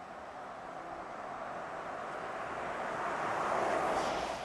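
A vehicle passing by, its noise growing steadily louder and peaking near the end.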